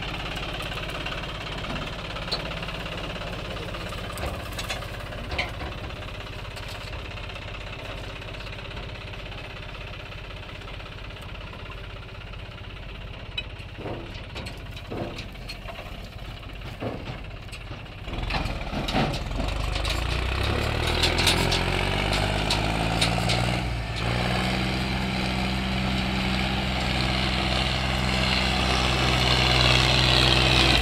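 John Deere 5310 three-cylinder diesel tractor engine idling steadily. About eighteen seconds in it revs up and runs louder and higher as it pulls a loaded trolley away, climbing again a few seconds later.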